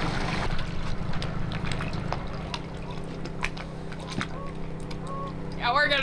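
Small outboard motor on an inflatable dinghy running steadily as the dinghy comes alongside a larger boat. The motor is throttled back about two seconds in, and it keeps running at a lower, steady hum.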